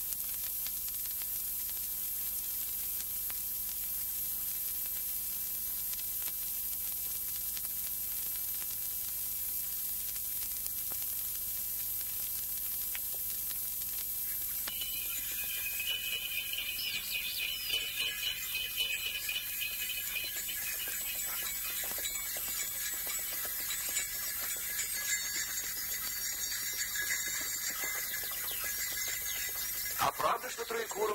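Steady hiss of an old 1930s optical film soundtrack; about halfway through, high chirping birdsong comes in over it.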